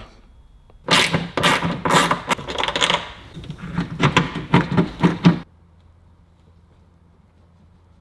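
A rapid, irregular run of plastic clicks and rattles from hands working at an Audi rear wiper motor, its wiring connectors and housing on the underside of the tailgate. It lasts about four seconds, then stops suddenly, leaving only a faint hum.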